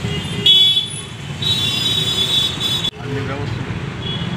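Street traffic running, with vehicle horns tooting: a short toot about half a second in and a longer one from about one and a half seconds. The sound cuts off abruptly near three seconds, and street noise with voices follows.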